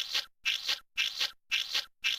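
A looped cartoon sound effect: a short scratchy, rasping burst repeated evenly about twice a second, each burst in two quick pulses.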